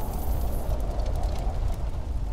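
Steady deep rumble of cinematic title sound design, with small crackles scattered over it.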